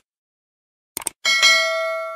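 Subscribe-animation sound effect: a quick mouse-click about a second in, then a bright bell ding with many overtones that rings on and slowly fades.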